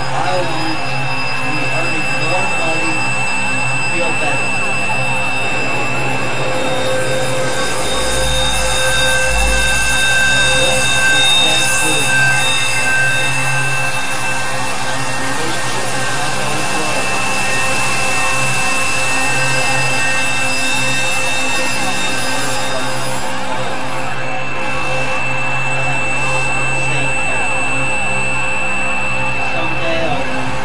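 Noisy experimental electronic drone music: a dense synthesizer wash with several held steady tones, and a low rumble that swells about eight seconds in and fades a couple of seconds later.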